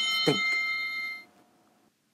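A bright, bell-like chime sound effect strikes as the notebook pops up, then fades out over about a second. The word "think" is spoken over it.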